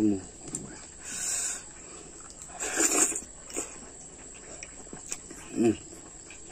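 Mouth sounds of someone eating rice and curry by hand: wet chewing and smacking, with two louder noisy smacks in the first half and a short low hum-like sound near the end.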